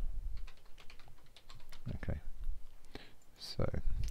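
Typing on a computer keyboard: a quick run of key clicks in the first half, then a few scattered keystrokes.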